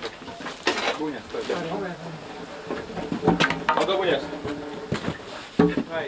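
Men's voices talking, with several sharp knocks and clatters in between.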